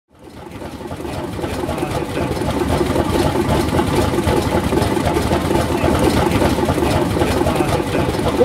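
Old engines running with a dense, rapid mechanical clatter, fading in over the first couple of seconds and then holding steady.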